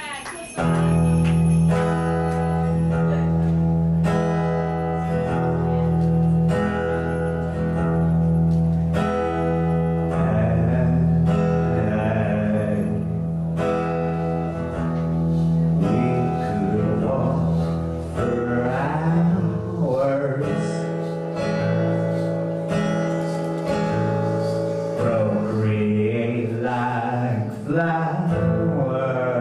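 A live song on acoustic guitar begins about half a second in, with sustained low notes under it, and a voice joins in singing from about ten seconds in.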